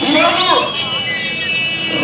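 A crowd with a man's voice over it, and a steady high-pitched tone through the second half.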